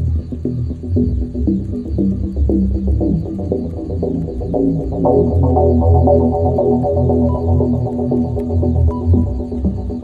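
A low, throbbing drone of ambient soundtrack, with a chord of held higher tones that comes in about halfway through.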